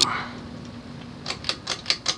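Halsey-built Beverly Hills Jubilee ceiling fan with a 153x16 mm motor, running at speed with a faint steady hum. In the second half there is a quick run of light, sharp clicks, about six a second.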